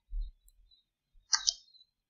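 A soft low bump at the start, then about a second and a half in two quick clicks a moment apart, like a computer mouse button or key being pressed.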